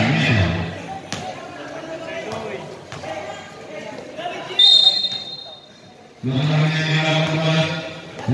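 A basketball bouncing on a concrete court while players and onlookers shout. A short, high-pitched whistle sounds about halfway through, and loud voices come in near the end.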